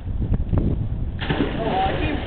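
A few sharp slaps, then about a second in a sudden loud splash as someone hits the pool water off a skimboard run, with a voice shouting over it.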